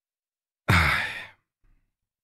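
A man's short sigh, breathed out suddenly less than a second in and trailing off within about half a second.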